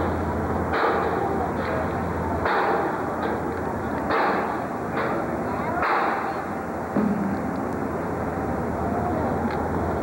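Steady outdoor street noise with a low rumble, broken by about five sharp bangs in the first six seconds.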